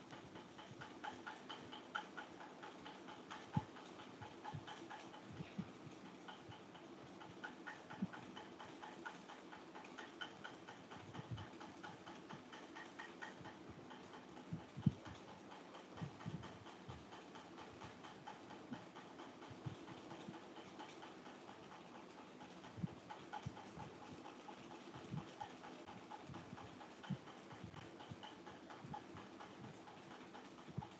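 Quiet background noise with scattered, irregular soft knocks or taps, a few seconds apart, one louder than the rest about fifteen seconds in.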